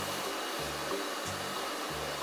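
Background music with a low bass line changing notes every few tenths of a second, over a steady, even hiss.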